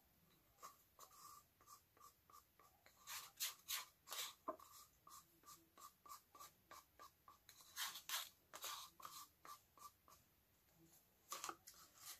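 Faint, irregular ticks and soft taps as thinned acrylic paint is poured from a small cup onto a stretched canvas, a few a second, with two busier clusters a few seconds apart.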